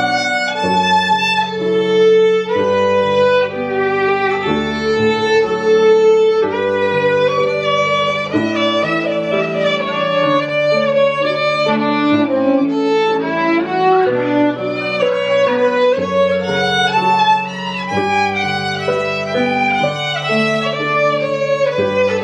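A violin being played, a bluegrass-style tune practised for a lesson, the notes running on without a break.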